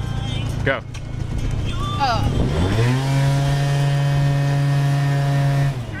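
Small motor scooter engine revving up as the scooter pulls away from a stop, rising in pitch for under a second and then holding a steady pitch for about three seconds before easing off near the end.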